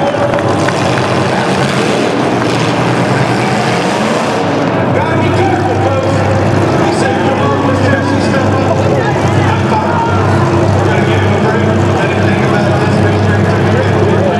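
Demolition derby cars' engines running, heard steadily from about four seconds in, with crowd noise and a voice over them.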